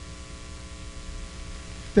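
Steady electrical hum with a low rumble underneath, several fixed tones held without change: mains hum on the microphone and sound system.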